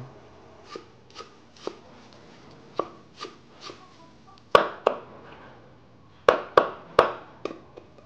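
Kitchen knife chopping herbs and chillies on a wooden cutting board: faint light taps at first, then about six sharp chops, uneven in spacing, in the second half.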